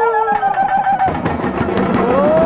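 A long held note with vibrato, sung or played, fades out about a second in; a Tamil folk ensemble's drums then start beating a quick, dense rhythm.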